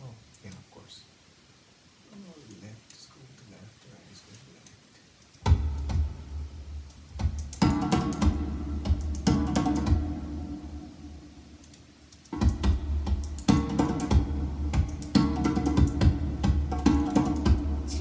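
Djembe-driven music track played back over studio monitors: a few seconds of faint, sparse sounds, then the full music comes in suddenly about five seconds in, dies away around twelve seconds and comes back in suddenly.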